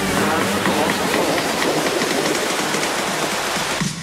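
Steady rushing water noise, with a faint regular beat of about four ticks a second beneath it. It cuts off just before the end.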